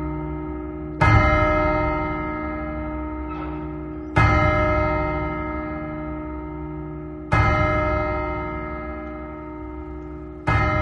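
A large bell tolling slowly, struck three times about three seconds apart, each stroke ringing on and slowly dying away.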